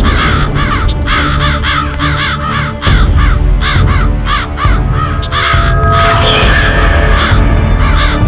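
A flock of crows cawing in rapid, overlapping calls, laid over background music with a heavy low drone. The cawing stops about five and a half seconds in, leaving the music.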